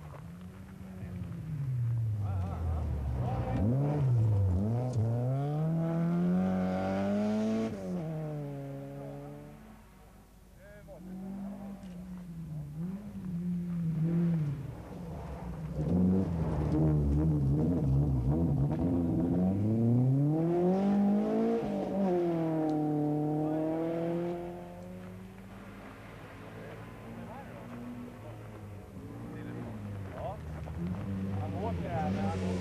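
Rally cars on a gravel stage driven hard past the spectators, engines revving with the note climbing and falling as they go by. The loudest passes come in the first nine seconds and again from about 16 to 25 seconds, with a lull around ten seconds.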